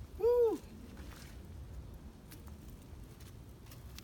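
A short, high vocal sound near the start, rising then falling in pitch, followed by a low steady rumble with a few faint clicks.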